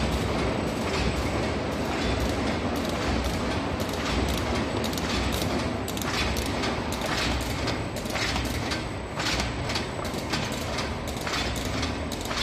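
QH-9905 hot-melt-glue carton erecting machine running, a steady mechanical clatter with rapid, repeated clacks from its moving parts.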